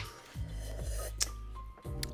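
Quiet background music with held bass notes. A brief rasping, rubbing noise comes at the start, and a sharp click a little after a second in.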